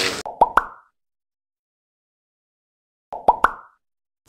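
Two short cartoon pop sound effects from an animated logo outro, about three seconds apart with dead silence between. Each is a couple of sharp clicks with a quick upward blip.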